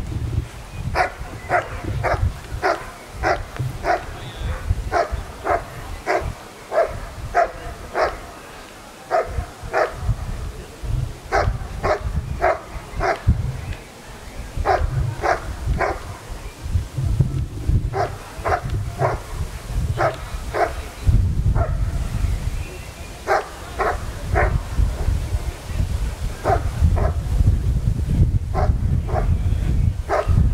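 German shepherd barking steadily at the helper hidden in a blind, about three barks a second in runs broken by short pauses: the bark-and-hold of a protection trial.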